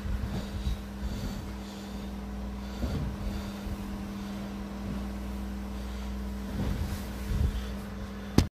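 A steady low hum with a few short, soft rushes of noise close to the microphone, a little louder about three seconds in and again near the end.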